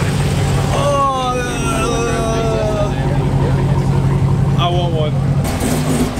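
Dodge Challenger SRT Demon's supercharged 6.2-litre Hemi V8 idling steadily, with voices over it. The sound changes abruptly near the end.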